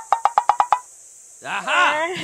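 A fast run of about eight hollow wooden clicks, like a wood-block comedy sound effect, stopping under a second in. Then, near the end, a short voiced sound with a rising and falling pitch, a man's laugh.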